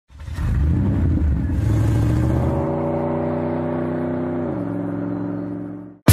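A car engine revs up with its pitch rising, then holds a steady note that steps down in pitch about four and a half seconds in and fades out near the end.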